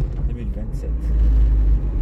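Steady low rumble of a car driving along a road, with a man's voice speaking briefly in the first second.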